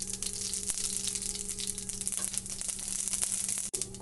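Mustard seeds sizzling in hot sesame oil in a cast-iron skillet: a steady hiss full of fine, rapid crackles.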